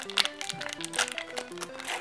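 Foil booster-pack wrapper crinkling and crackling in the hands as it is worked open, over background music playing a simple stepping melody.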